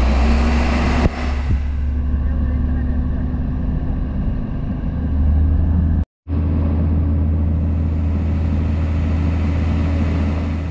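Hino truck's diesel engine running under load to drive the Tadano truck-mounted crane's hydraulics while the boom is worked by radio remote: a steady low drone with a steady hum above it, briefly cut off about six seconds in.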